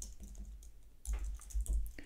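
Typing on a computer keyboard: a handful of separate keystrokes, a few near the start and a short run in the second half.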